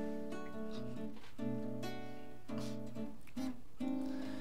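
Acoustic guitar strumming a slow run of sustained chords, a new chord about every second and a bit, playing the intro to a song.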